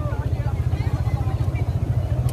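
A motorcycle engine idling close by, with an even low pulse of about ten beats a second.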